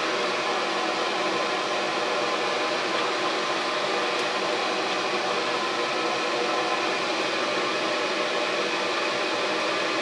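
Exhaust fan of a homemade fume hood running steadily: a constant rush of air, a little loud, with a faint steady hum in it.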